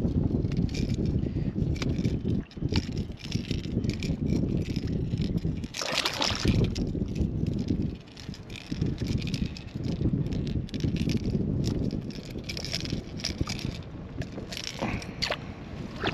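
Water sloshing and splashing against the side of a kayak as a small striped bass is held at the surface and unhooked, with scattered clicks from handling the fish, lure and lip grippers. Under it runs a steady low rumble of wind on the microphone.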